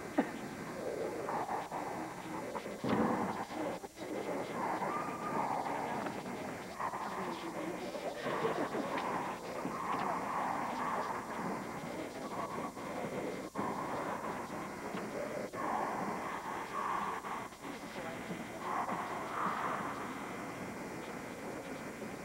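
A squad of girls shouting a cheer in unison, in short shouted phrases about a second apart, with a few sharp hits among them, echoing in a gymnasium.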